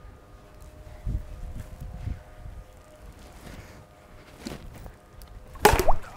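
A faint low outdoor rumble, then near the end a sharp, loud crack as a plastic Blitzball bat hits the plastic ball.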